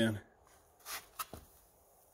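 Small terrier nosing about in a narrow gap behind a plastic bin: a short, faint rustle about a second in, followed by a light click.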